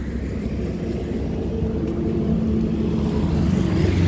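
Motor vehicle engines running with a steady low rumble, growing slightly louder.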